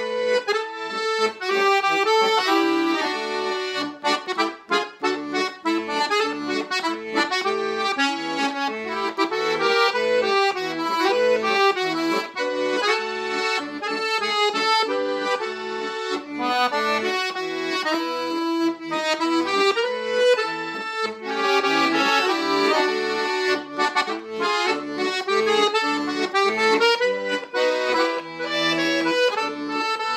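Bugari piano accordion playing a Dutch folk song: a right-hand melody over a steady bass and chord accompaniment.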